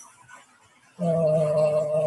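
About a second of near silence, then a man's voice holding a long, level hesitation sound, a drawn-out "uhh" on one pitch.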